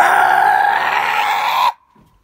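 A boy's loud, harsh, raspy yell, lasting about a second and a half and cutting off suddenly.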